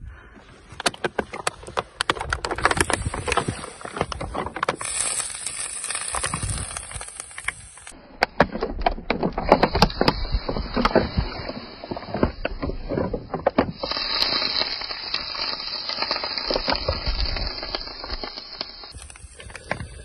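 Water poured from a plastic bottle sizzling and crackling on a bicycle's overheated rear coaster-brake hub, under a steady high hiss. The brake has overheated and burnt from braking down a long mountain descent.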